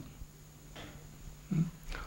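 A pause in a man's lecture: faint room tone with a steady low hum, broken by one short, low vocal sound about one and a half seconds in.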